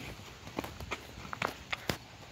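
A few light, irregular taps and scuffs, the sharpest one near the end.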